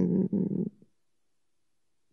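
A woman's voice trailing off in a low, creaky hesitation murmur for under a second, then silence.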